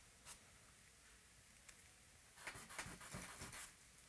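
A compressed charcoal stick drawing on newsprint, faint. There is one short stroke a little after the start, then a quick run of strokes from about two and a half seconds in until near the end.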